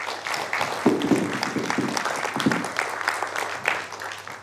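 Audience applauding, dying down near the end.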